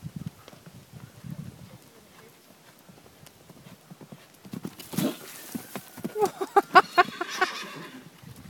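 A yearling horse's hoofbeats on a dirt track as it canters, then a loud whinny starting about five seconds in, a quavering call of rapid pulses lasting nearly three seconds.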